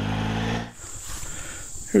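Triumph Tiger 800XCx three-cylinder engine running steadily under way, cut off abruptly less than a second in. Then a steady high-pitched insect chorus, like crickets, is heard.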